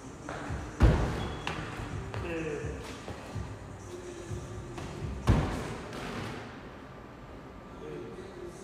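Two heavy thuds on a gym floor about four and a half seconds apart, the second the loudest: a person dropping to the floor in a burpee, then landing after jumping over a 20-inch wooden plyo box.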